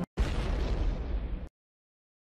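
A sudden explosion-like boom sound effect that hits loud and fades over about a second before cutting off abruptly. It marks a qualifying country being revealed on a results board.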